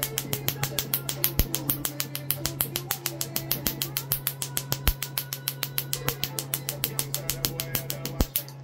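Tattoo-removal laser firing in a rapid, even train of sharp snapping clicks, about six or seven a second, as the handpiece is held on the tattoo, over a steady low hum from the machine.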